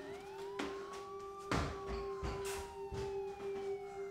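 Ambient film-score drone: one steady held tone under slow gliding tones that rise at the start and then slowly sink, siren-like. A few sharp knocks fall through it, the loudest about a second and a half in.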